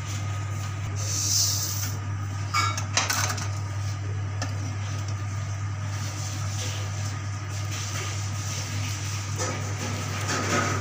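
Kitchen sounds over a steady low hum: ingredients going into a stainless steel mixing bowl, with a brief hiss about a second in and a few sharp knocks of utensil or container on the bowl around three seconds in.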